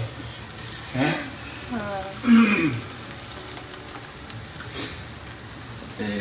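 Paratha frying on a flat tawa griddle over a gas flame: a steady low sizzle. A few short spoken words come about one to three seconds in, and a single light click near the end.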